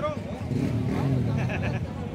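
A motorcycle engine running amid the chatter of a crowd of riders, louder for about a second from half a second in, its pitch shifting a little as it is revved.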